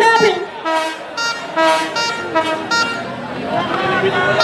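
A horn blown in a quick series of short toots, about seven in the first three seconds.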